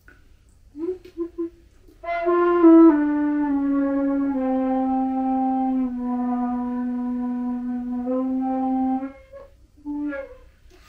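Hybrid flute (Native American-style flute mouthpiece on a Guo New Voice composite flute body) playing: three short notes about a second in, then a slow phrase that steps down into the low register and holds a long low note until about nine seconds. A brief low note sounds again near the end.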